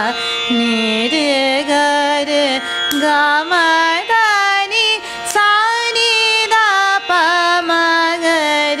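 A woman singing phrases of a Hindustani sargam geet in Raag Yaman, solo, with gliding, shaken ornaments between notes and short breaks between phrases, over a steady drone note.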